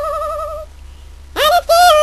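A woman singing wordless held notes with vibrato and no accompaniment. One long high note ends about two-thirds of a second in, and after a short breath a new note swoops up and is held near the end.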